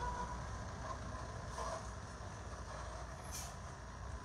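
Low, steady rumble of truck and car engines in slow-moving traffic, heard from inside a car, with a brief hiss a little after three seconds in.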